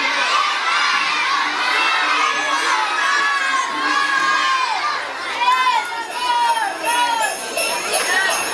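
A large crowd of children shouting and cheering together, with several loud repeated calls in the second half. A rhythmic jingle of bells comes in near the end.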